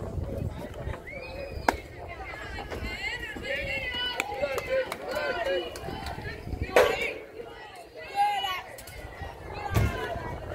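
Children's voices shouting and chattering at a youth baseball game, with a few sharp pops. The loudest pop comes about seven seconds in.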